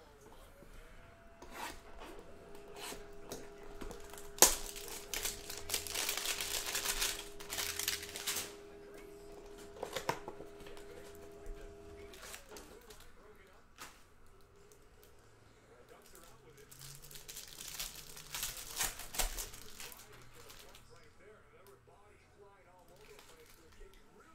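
Plastic wrapping on a trading-card hanger box being torn open and crinkled by hand, with a sharp snap about four seconds in followed by a few seconds of steady crinkling, another burst near ten seconds and more crinkling later on.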